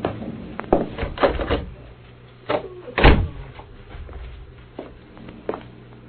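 Radio-drama sound effect of a door being worked: a series of clunks and knocks, the loudest about three seconds in, over a steady low hum.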